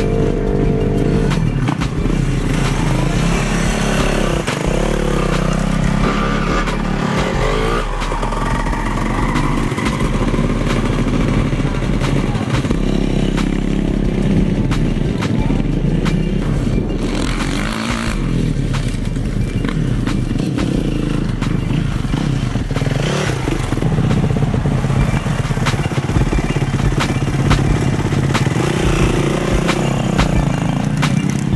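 Dirt bike engines running in the pits, with revs rising and falling.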